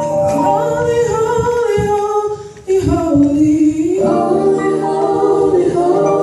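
Women's gospel vocal group singing in harmony through microphones, holding long notes, with a brief break about two and a half seconds in before the voices come back in.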